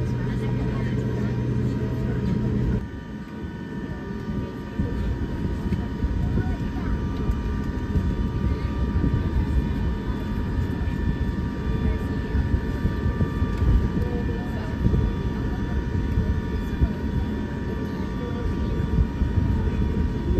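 Airbus A350 airliner cabin noise during taxi: a steady low rumble with faint, constant high engine whine tones. A low hum in the first three seconds cuts off abruptly.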